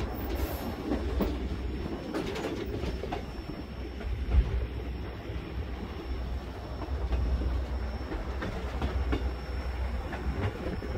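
White Pass railway car rolling along the track: a steady low rumble with scattered clacks from the wheels and rails, the sharpest about four seconds in.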